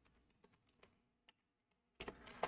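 A few faint computer keyboard keystrokes, spaced unevenly, as a short word is typed.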